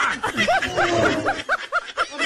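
A high-pitched laugh: a quick run of about seven short rising-and-falling "ha" pulses, some five a second.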